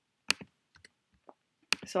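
Clicks from computer input as placeholders are selected and deleted in a slide editor: one sharp click about a third of a second in, then three fainter clicks.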